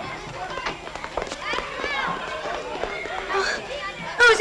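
Several indistinct voices calling and talking over one another, mixed with scattered short knocks.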